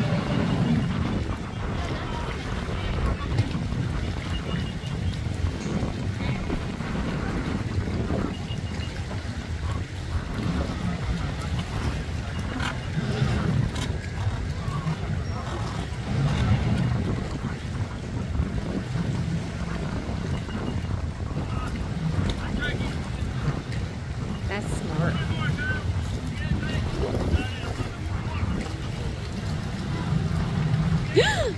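Boat engines running at low speed as boats idle and pull in at a dock, a steady low rumble, with wind on the microphone and faint distant voices.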